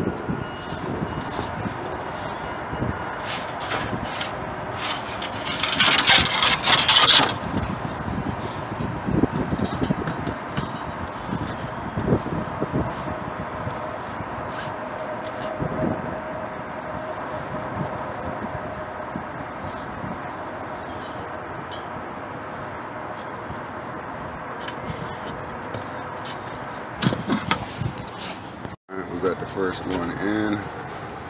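Metal scraping and light clinking as a condenser fan motor and its wire grill are handled on a stand, over a steady outdoor background noise. A loud rush of noise about six seconds in lasts a second or so.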